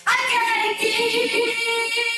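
A woman's voice suddenly belting one loud, very high sung note, sliding down slightly at the start and then held steady.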